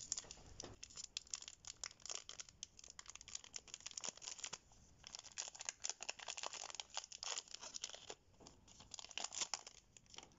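Pokémon card booster pack's foil wrapper being torn open and crinkled by hand: a faint run of irregular crackles and rustles, pausing briefly twice.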